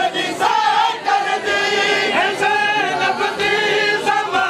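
A group of men singing a noha, a Shia mourning lament, together on long held, slightly wavering notes.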